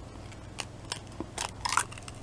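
An egg cracked open by hand: a few light clicks of the shell, then a louder crackle of breaking shell about one and a half seconds in.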